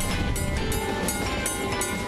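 Open trolley car running on its rails, with background music playing over it.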